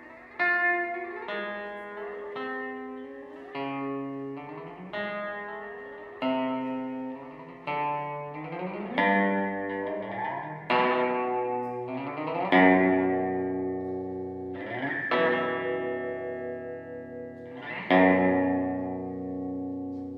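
Solo electric guitar played through an amplifier: plucked notes and chords struck every second or two and left to ring out and fade, with the loudest chords struck past the middle and near the end.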